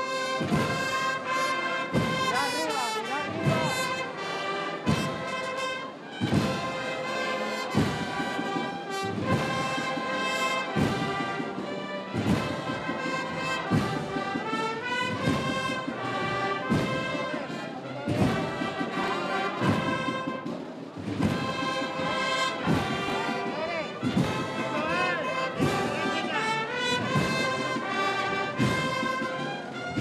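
A Holy Week agrupación musical, a brass-and-drum procession band, playing a processional march. The brass carry the melody over a steady drum beat of about one stroke a second.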